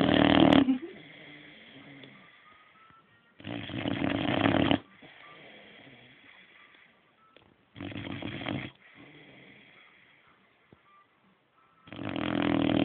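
Boxer dog snoring in its sleep: loud snores about every four seconds, the first ending just after the start and two more at about three and a half and eight seconds in, with much quieter breathing between.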